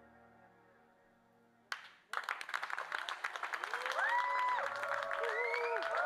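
The last sustained keyboard chord of a live band's piece dies away. About two seconds in, after a single click, the audience breaks into applause with cheers and calls on top, growing louder.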